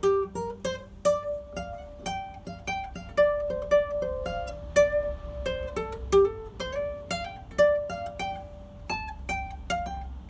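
Martin Romas JR-N39 full-size classical guitar with nylon strings, played fingerstyle: a steady run of single plucked notes picking out a melody over lower bass notes.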